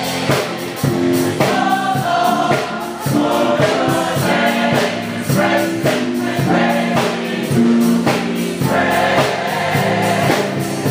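Gospel choir singing together, backed by percussion keeping a steady beat.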